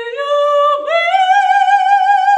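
A woman singing unaccompanied in a high soprano voice. She steps up through two notes, breaks off briefly, then rises to a higher note about a second in and holds it with a wide vibrato.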